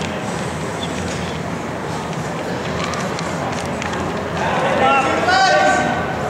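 Steady gym background noise, then raised voices shouting from about four and a half seconds in, with drawn-out, held calls.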